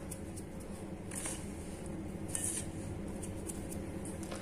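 Fingers rustling through dry ground spice powder in a stainless steel bowl: a few faint, soft rustles over a steady low hum.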